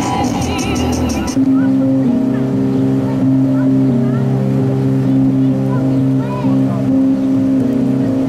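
Pop music. A drum beat cuts off suddenly about a second and a half in and gives way to held chords with short sliding vocal notes over them.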